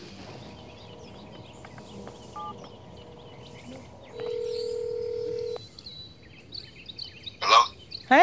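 A mobile phone placing a call: a short keypad tone, then one ring of the ringback tone lasting about a second and a half, and a brief voice near the end as the call is answered. Birds chirp faintly throughout.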